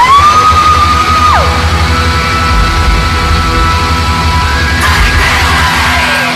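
Rock music with held, sustained chords and a pulsing low beat; at the start a long high yell rises, holds for about a second and drops away.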